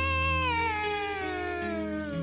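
A sustained electric guitar note sliding slowly downward in pitch, over a steady low drone.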